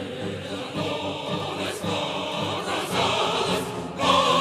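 Opera chorus singing, many voices together with orchestra, a dense unbroken sound.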